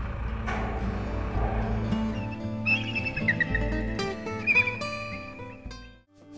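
Background music with held, sustained notes, over a low rumble that stops about two seconds in. The music fades out at the end.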